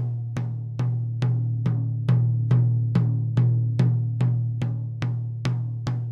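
A drum struck in an even beat, about two and a half hits a second, each with a low ringing tone. It is heard through a microphone being moved nearer and farther, so the low end of the hits swells and eases with the proximity effect.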